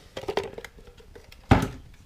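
Handling noise as a clear plastic bowl is lifted away: a few light clicks and taps, then one sharp thump about one and a half seconds in.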